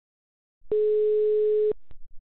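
Telephone ringback tone on a tapped phone line: a single steady tone lasting about a second as the outgoing call rings at the other end, then a short click.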